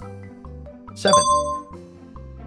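A bright bell-like ding chime about a second in, ringing out over about half a second, signalling the answer reveal, over light background music.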